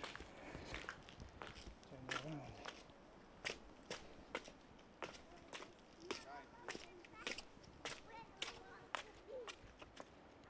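Quiet footsteps crunching along a path patched with snow, about two steps a second, at a steady walking pace.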